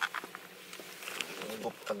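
Handling noise inside a car: scattered clicks and rubbing as the camera is moved about, over a faint steady hum, with a low murmur of voice near the end.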